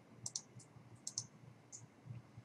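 Faint computer mouse clicks: three short clicks spread over two seconds, the first two each a quick double click.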